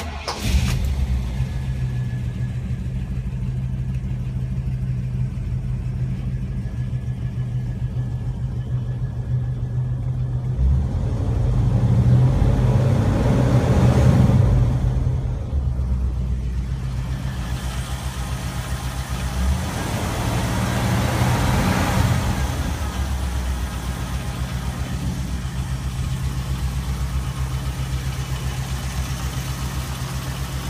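The car's 6.6-litre V8 starts and catches at once, then idles steadily, heard from the driver's seat. It is revved twice, swelling about 11 to 15 seconds in and again about 19 to 22 seconds in, before settling back to idle.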